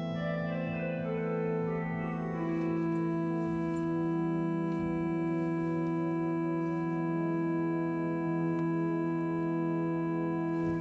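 New Aeolian-Skinner pipe organ: a quiet chord held steadily in the pedals, with a melody played on the manuals above it. The melody moves through several notes in the first couple of seconds, then holds one long note until near the end.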